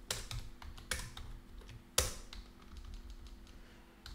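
Computer keyboard being typed on: scattered key clicks in short runs, with the loudest keystroke about two seconds in.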